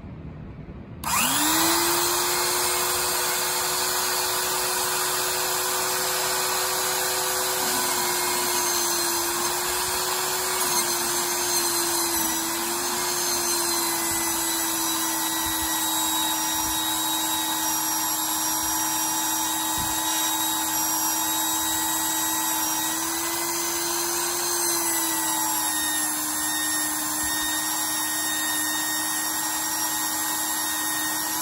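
Magnetic drill press switched on about a second in, its motor spinning up to a steady whine and running as it drills a hole in steel. The pitch sags a little twice as the cutter takes load.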